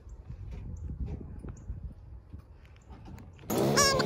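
Faint, uneven low rumble with a few soft clicks and knocks, then music comes in loudly just before the end.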